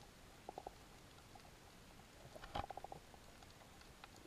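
Faint underwater ambience recorded on a coral reef, with two brief trains of rapid low pulses. The first is short, about half a second in. The second is longer and louder, with a sharp click in the middle, a little past halfway.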